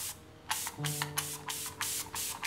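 A small hand-held pump spray bottle misting the air: a quick run of short hissing spritzes, several a second, starting about half a second in. Soft sustained music plays beneath.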